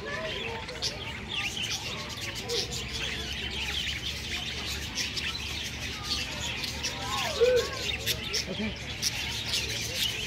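A flock of budgerigars chattering: a constant run of short, high chirps and warbles.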